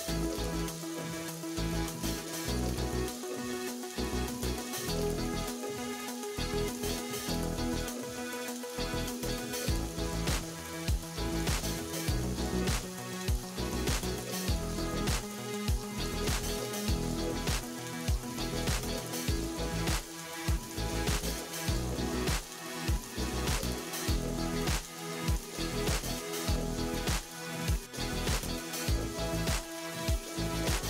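Chopped onions sizzling and crackling in hot oil in a non-stick kadai, stirred with a wooden spatula, over steady background music.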